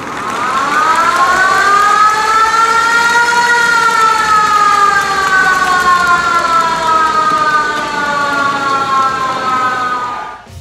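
Koshien Stadium's game-start siren: one long, loud wail that rises in pitch over the first few seconds and then slowly sinks until it stops at the very end, signalling the start of the game.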